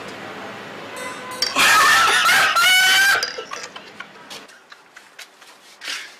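Hearty laughter, loud and high-pitched, starting about one and a half seconds in and lasting nearly two seconds, then dying down to a few faint clicks.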